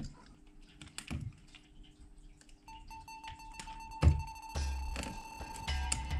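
Light clicks and knocks from a flush wall outlet on its metal mounting frame being handled and fitted into a hole in plasterboard, the sharpest knock about four seconds in. Background music with held tones runs underneath.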